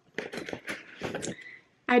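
Rustling and quick small clicks of a hand rummaging in the front pocket of a wipe-clean, plasticky tote bag and pulling out a gait belt. The sound lasts about a second and a half, then stops.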